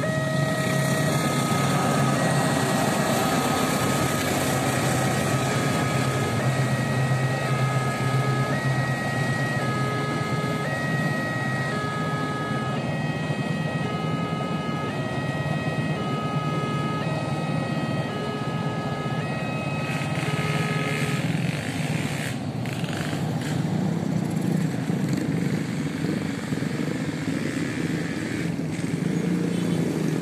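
Level-crossing warning bell sounding a repeated alternating chime over the steady running noise of a passing KAI passenger train. The chime stops about two-thirds of the way through, leaving the train's rumble with a few short knocks.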